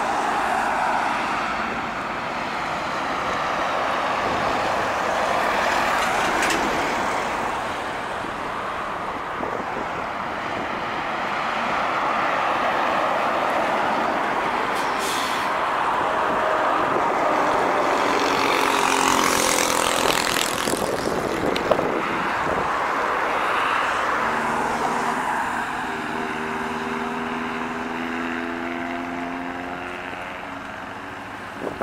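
Heavy diesel trucks driving past on a highway: steady engine and tyre noise that swells and fades as they go by, with a short air-brake hiss about halfway through. In the second half a truck engine note falls in pitch as it passes, and near the end a steady engine note from approaching trucks comes in.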